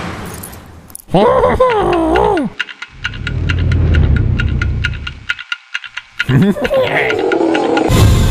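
Cartoon sound effects: a wordless, gliding character vocalisation, then a clock ticking quickly, several ticks a second, over a low rumble, then another wordless vocal sound near the end.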